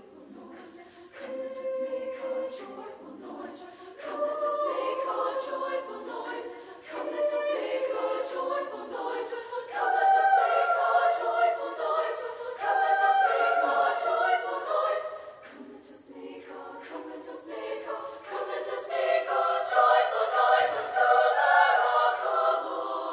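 High school women's choir singing in phrases. The voices build, swelling loudest about ten seconds in and again near the end, with a softer dip in between.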